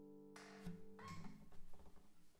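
The last chord of a small-body cedar-top, cocobolo-backed 12-fret acoustic guitar rings out softly and is cut off by the strings being muted about a third of a second in. Knocks and rustling follow as the guitar is handled and lifted.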